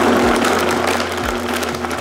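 High-powered countertop blender running at speed, crushing ice and frozen banana and strawberries into a smoothie: a loud, steady, dense whirring that settles in right after the motor spins up at the start.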